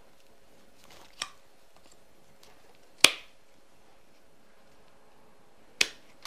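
Hand pruners snipping through a woody foliage stem: three sharp snips, a light one about a second in, the loudest about three seconds in, and another near the end.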